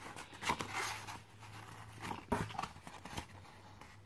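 Faint rustling of a paper label sheet being bent and handled to lift its peel-off backing, with a few soft ticks and scrapes, a little more about half a second in and around two and a half seconds.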